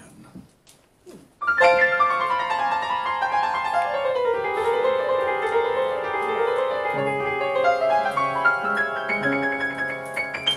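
Solo upright piano starting a slow tune about a second and a half in, after a brief hush: a run of treble notes falls and then climbs again, and bass notes join about seven seconds in.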